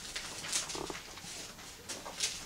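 Faint rustling and light clicks of Bible pages being handled and turned, with a brief low vocal sound just under a second in.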